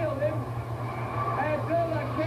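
Speech from a television's wrestling broadcast, a voice talking on without pause, over a steady low electrical hum.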